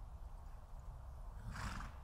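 A horse gives one short whinny about one and a half seconds in, over a steady low background rumble.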